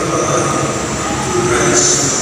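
Steady din of a crowded church with electric fans running. A priest's amplified voice comes through faintly near the end.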